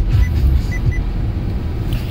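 Bass-heavy FM radio music playing through an aftermarket car audio system with Kicker 10-inch subwoofers, the deep bass dropping away about half a second in as the volume is turned down; a low rumble carries on underneath.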